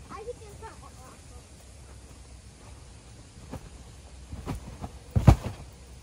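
Thumps of a child landing on a trampoline mat: a few soft ones, then one heavy landing about five seconds in. Faint children's voices near the start.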